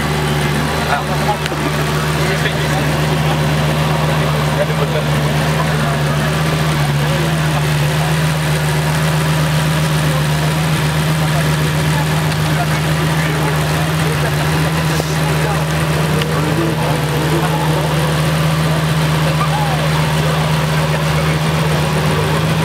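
Lamborghini Gallardo's V10 engine idling steadily, with an even, unchanging note throughout.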